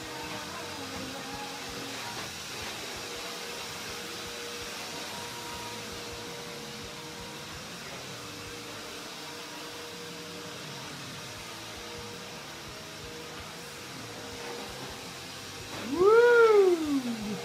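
Steady whooshing noise with a faint steady hum underneath, holding an even level throughout, as from an appliance or air blower running in the room.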